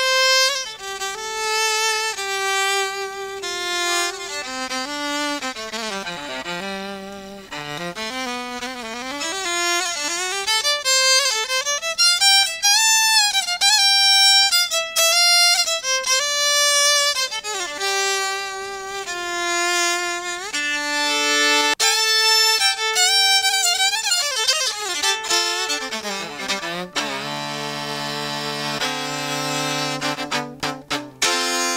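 3Dvarius Line five-string electric violin bowed solo, with no effects, through its piezo pickup: a flowing melody with slides between notes, dipping to low notes on the C string about seven seconds in and again near the end.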